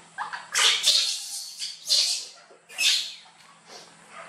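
Baby monkey giving a run of short, high cries, four or five in a few seconds, the last one weaker.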